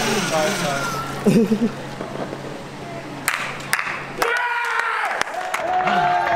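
Onlookers calling out and cheering, with a few scattered claps and a low steady hum underneath that stops about four seconds in.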